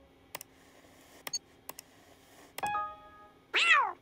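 Cartoon sound effects: a few computer mouse clicks, a short ringing electronic chime, then the cartoon cat's brief, pleased vocal sound that rises and falls in pitch. The cat's sound is the loudest.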